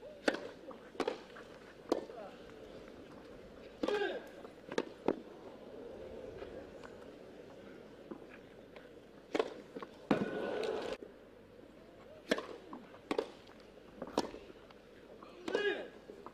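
A grass-court tennis rally: racket strikes on the ball and ball bounces, roughly a second apart, with players grunting on some of the harder shots.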